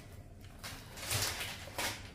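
Rustling of grocery packaging being handled, swelling about a second in, with a short knock near the end.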